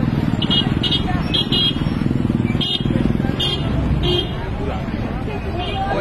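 Roadside traffic: vehicle engines running under the mixed voices of a crowd. A string of short high-pitched blasts cuts through in the first four seconds.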